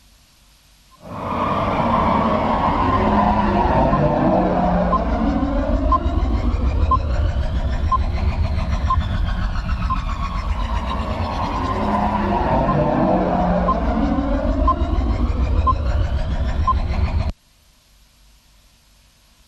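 Cinematic sound-design soundtrack of a sponsor video: a deep rumbling drone with slow sweeping tones and a faint tick about once a second. It starts abruptly about a second in and cuts off suddenly near the end.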